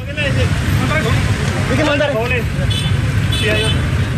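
Steady low rumble of street traffic and idling motorcycles, with several people's voices talking over it.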